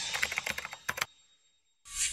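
Logo-animation sound effect: a quick run of small clicks, like fast typing, for about the first second. Then a short silence, and a bright ringing hit that swells up just before the end.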